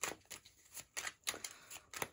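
A tarot deck being shuffled by hand: an irregular run of short card clicks and rustles.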